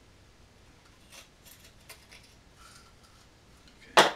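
Quiet handling of a fiberglass composite fuselage mold with a few faint taps, then one sharp, loud knock near the end as the mold is struck with a rubber mallet to break the part free.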